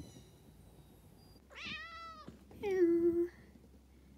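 Domestic cat meowing twice: a quieter meow that rises and falls about a second and a half in, then a louder one that drops in pitch and holds.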